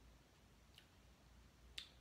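Near silence: room tone with a low steady hum, broken by a faint click a little under a second in and a sharper click near the end.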